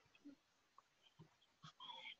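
Near silence: faint room tone with a few soft, brief sounds, the clearest a short faint pitched sound near the end.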